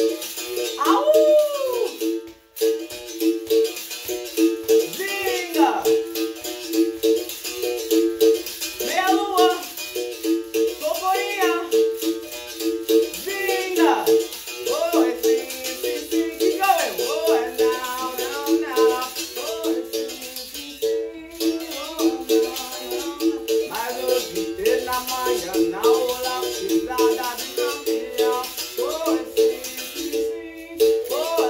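Berimbau being played in a steady rhythm: the stick striking the steel wire, switching back and forth between two pitches, with the caxixi rattle shaking along. Sweeping wah-like glides ride over the notes.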